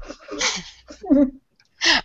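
A person's short breathy laugh into a headset microphone: a puff of breath followed by a brief voiced laugh sound.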